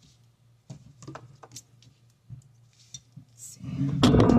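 Scattered light ticks and rustles of paper and card being handled as a thin backing strip is peeled off foam tape. Loud music starts near the end.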